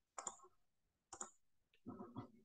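Faint, short clicks, about one a second.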